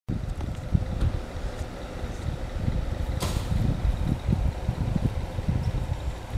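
Wind buffeting the microphone: a low, uneven rumble that swells and falls, with a faint steady hum underneath and a brief sharp rustle about three seconds in.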